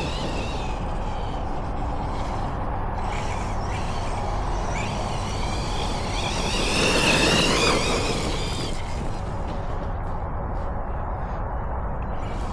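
Losi Hammer Rey RC truck running across grass: its electric motor and drivetrain whine, rising and falling with the throttle and louder for about a second around the middle as it accelerates, over tyre noise and a steady low rumble of wind on the microphone.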